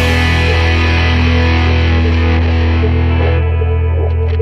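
Distorted electric guitar holding a rock song's final chord and letting it ring out over a steady low note, the drums having stopped. The bright top of the chord fades away a little past three seconds in.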